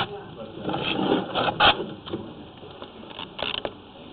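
Sewer inspection camera being pulled back through the drain pipe, its head and push cable scraping and knocking in irregular bursts, with a man's voice briefly.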